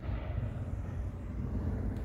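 Low, steady rumble of a movie preview soundtrack played through a home theater surround sound system and picked up in the room, starting suddenly.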